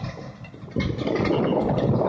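Tesmec TRS1675 rock trencher running as it cuts a trench, a heavy machinery noise that dips briefly and comes back louder about three quarters of a second in.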